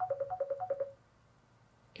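Mobile phone ringing for an incoming call: a fast run of short alternating high and low ringtone beeps that stops just under a second in.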